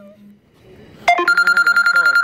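Electronic ringing tone, a rapid trill on one steady pitch, sounding in bursts of a little over a second with gaps of about a second; a new burst starts about a second in.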